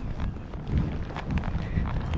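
Wind rumbling on a chest-mounted camera's microphone while a horse walks across a sand arena, with a few soft thuds from its hooves.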